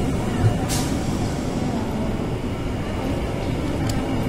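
Passenger train rolling slowly into a station, heard from its open door: a steady low running rumble, with a short hiss just under a second in.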